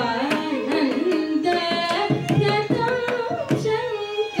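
Carnatic vocal music: a woman's voice sings a gliding, ornamented melody, shadowed by violin, while a mridangam plays sharp strokes that grow busier about halfway through.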